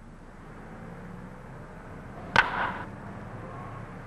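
A single sharp crack of a wooden baseball bat meeting a pitched ball, about two and a half seconds in, over the steady low hum and hiss of an old film soundtrack.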